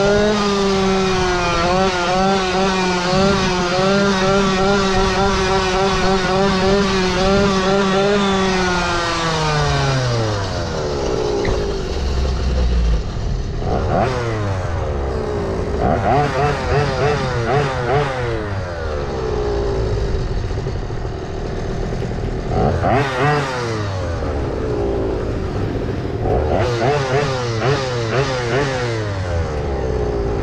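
Small two-stroke Go-ped scooter engine with an aftermarket exhaust, held at high revs for about nine seconds. The revs then drop away, and the engine is blipped several times, each rev rising and falling.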